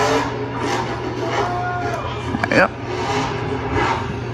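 A young child's wordless voice: a short held high note, then a louder, brief squeal that swoops up and down about two and a half seconds in, over a steady low hum.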